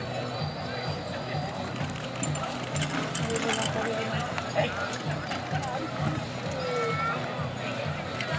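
A single horse pulling a marathon carriage at speed through deep arena sand: muffled hoofbeats and wheels churning in a steady rhythm, with voices and some music in the background.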